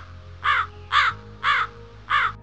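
American crow cawing: a run of short caws about two a second, each rising and falling in pitch.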